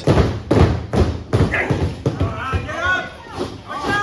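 A run of flat thuds of hands slapping a wrestling ring's apron, about two a second, then voices shouting from ringside.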